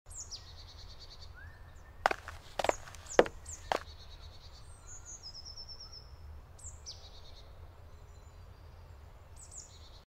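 Forest birds singing, with several falling whistles and a short trill. About two seconds in, four sharp knocks come in quick, uneven succession and are the loudest sounds.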